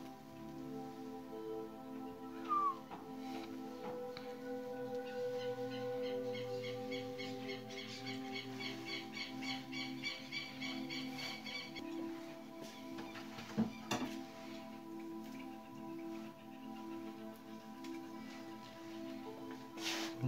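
Background music of sustained held tones, with a fast repeating high figure in the middle and a short falling glide near the start. A couple of brief clicks stand out about two-thirds of the way through.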